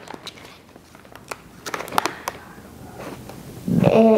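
Clear plastic packaging crinkling as it is handled, with scattered sharp clicks and taps from a small metal light-mount bracket turned in the hands, most of them between one and two and a half seconds in.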